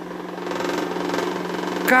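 Electric pedestal fan running at a high speed setting with homemade cardboard blades, giving a steady motor hum and whir that grows a little louder about half a second in. The cardboard blades are somewhat unbalanced.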